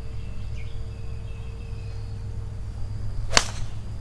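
A 4-iron striking a golf ball off the tee: one sharp crack about three and a half seconds in, over a steady low background rumble.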